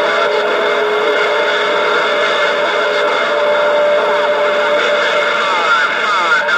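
CB radio receiver putting out loud, steady static with a steady whistle of interfering carriers running through it: the noise of a crowded channel open to long-distance skip.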